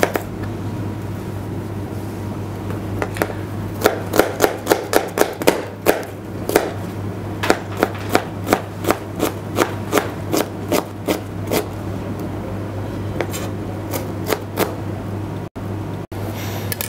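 Kitchen knife chopping an onion on a plastic cutting board: quick strikes, about four a second, in runs with short pauses, starting about three seconds in, over a steady low hum.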